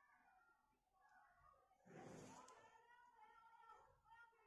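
Near silence: a faint rustle of yarn and crocheted fabric being handled during hand-sewing about two seconds in, with faint drawn-out pitched sounds in the background.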